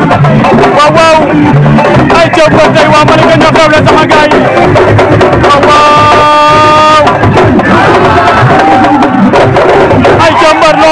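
Sabar drums playing a fast, dense rhythm with singing over it, and a long steady held note about six seconds in.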